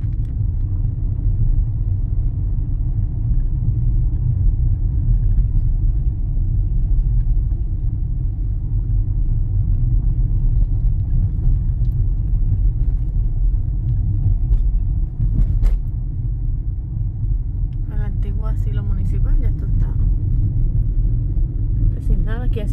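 Car cabin noise while driving slowly through town: a steady low rumble of engine and tyres on the road.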